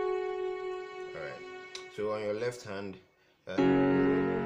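Keyboard piano: the held F# that ends the intro melody rings on and fades. A short stretch of murmured voice follows. After a brief drop-out, a low left-hand chord is struck about three and a half seconds in.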